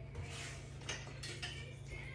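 Faint clinks and light knocks of kitchenware being handled, a few separate small strikes.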